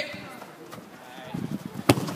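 A football kicked once near the end, a single sharp thud as a free kick is taken.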